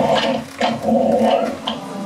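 Animatronic Monster Book of Monsters prop in its cage giving loud, animal-like growls: a short growl, a longer one, then a brief snap near the end.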